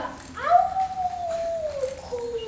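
A child's voice howling like a wolf: one long drawn-out howl that rises at the start, holds, and sinks slightly near the end.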